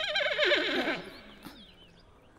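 A horse's whinny: a quavering call that falls in pitch and fades out about a second in.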